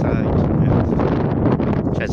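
Strong wind buffeting a phone's microphone: a loud, steady, low rumbling roar.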